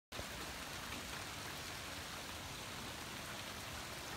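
Heavy rain falling steadily, with drops landing on the water pooled on an above-ground pool's cover.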